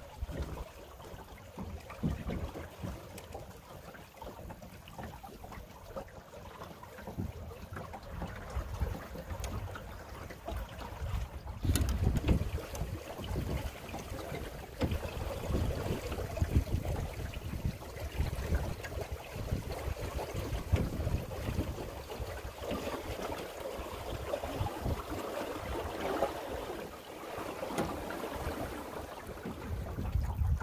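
Water washing along the hull of a Drascombe Lugger sailing boat running downwind through a light chop, with gusty wind buffeting the microphone. A sharp knock comes about twelve seconds in, after which the water sounds louder.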